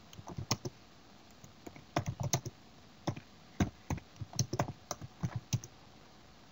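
Computer keyboard typing in irregular bursts of keystrokes, with short pauses between bursts.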